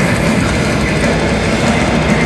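Symphonic black metal band playing live at full volume: distorted electric guitars over fast, dense drumming.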